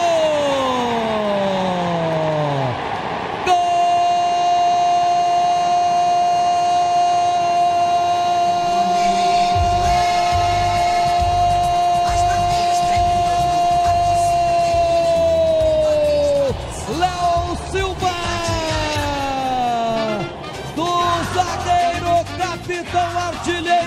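Brazilian radio narrator's drawn-out goal shout: one long steady note held for about thirteen seconds that drops away at the end, with falling cries before and after it. A music jingle with a steady drum beat comes in under the held note partway through.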